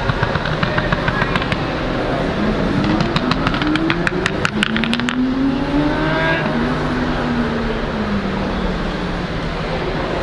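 A car engine revving, its pitch climbing over a couple of seconds, then climbing again and holding before easing off, with a quick run of ticks in between.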